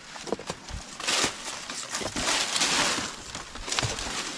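Footsteps on stone steps with a burst of dry rustling, about a second long in the middle, as stiff palm fronds brush past.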